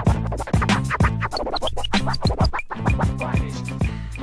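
Hip-hop beat with a bass line and DJ turntable scratching, many quick back-and-forth scratches cut over the rhythm.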